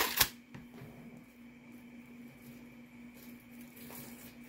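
Two quick clicks at the very start as costume jewelry is handled on a wooden table, then a quiet room with a faint, steady hum.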